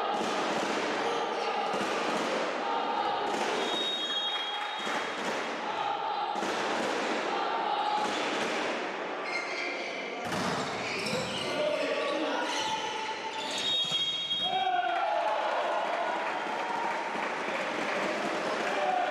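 Volleyball being played in a sports hall: the ball is struck and bounces, and players call out. A short high whistle sounds twice, about four seconds in and again near fourteen seconds.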